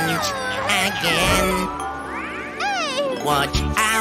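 High-pitched, exaggerated cartoon character voices exclaiming with sliding, swooping pitch over background music.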